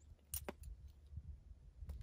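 Faint clicks and clinks of a leather horse halter's metal buckle and hardware as it is unbuckled and slipped off the horse's head: two sharp clicks about half a second in and another near the end.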